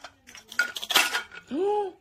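Plastic toy-food pieces clattering as velcro-joined toy fruit is cut apart with a plastic toy knife, with a short rasping burst in the middle. Near the end a voice exclaims "wow" (우와).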